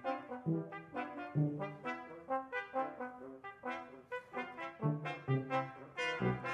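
Brass ensemble of two trumpets, two French horns, trombone and tuba playing contemporary chamber music in short, detached chords, several a second, with the tuba's low notes coming in under some of them.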